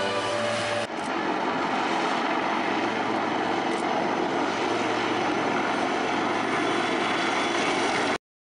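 Royal Navy AW159 Wildcat helicopters flying a display pass, a loud, steady rush of rotor and turbine noise. The noise follows a sudden cut just under a second in, which ends a brief stretch of music.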